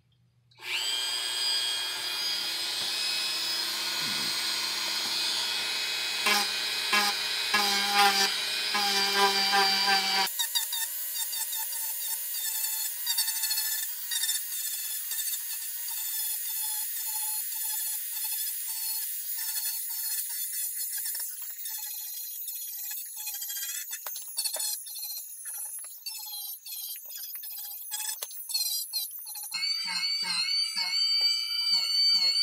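Dremel 4000 rotary tool starting up about half a second in and running with a steady high whine as its sanding bit grinds down the edge of EVA foam. About ten seconds in the sound changes abruptly: the low hum drops out while the whine and grinding carry on, more unevenly.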